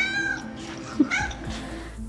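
A cat meowing twice, a longer call at the start and a shorter one about a second later, over background music.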